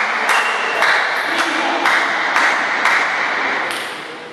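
Table tennis ball clicks, sharp and regular at about two a second, over a steady background hiss.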